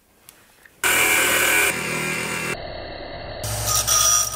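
Bench power tools working metal rod in a run of short clips that cut abruptly from one to the next. Near the end a disc sander grinds the end of a metal rod, with a low motor hum under the grinding.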